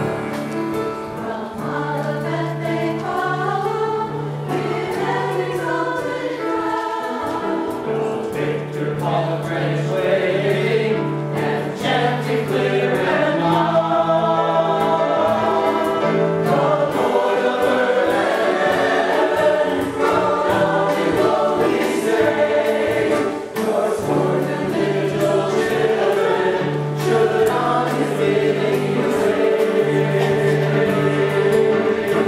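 A mixed choir of adults and children sings a hymn with instrumental accompaniment, and a steady bass line moves under the voices.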